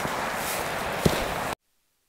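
Footsteps swishing through dry moorland grass, with one sharper step or knock about a second in. The sound cuts off abruptly about a second and a half in, leaving near silence.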